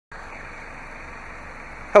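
Steady, even background hiss with no distinct tone or rhythm. A man's voice begins right at the end.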